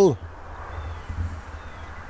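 Nissan Titan pickup running: a low, steady rumble with a faint hiss above it.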